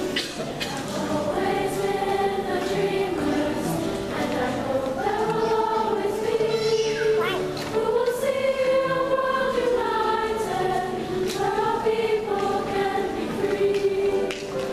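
A girls' middle-school choir singing long held notes with piano accompaniment.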